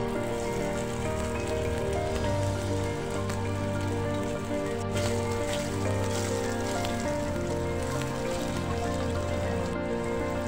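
Steamed chaulai saag rikwach pieces shallow-frying in hot oil in a frying pan, a steady sizzle as they are laid in, under background music.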